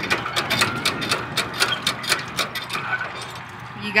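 Hand pitcher pumps being worked quickly to push water down a duck-race pipe, a rapid clicking clatter of about five strokes a second that dies away about three seconds in.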